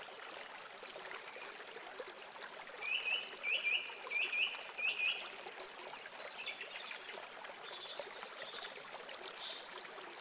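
A small songbird calls over a steady background hiss. It gives a run of about eight short rising chirps from about three to five seconds in, then later a few series of higher, thinner notes that step down in pitch.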